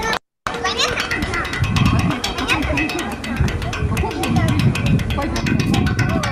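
Children's voices calling and chattering at play, mixed with music, from a video's soundtrack played over a video-call screen share. The sound cuts out for an instant just after the start.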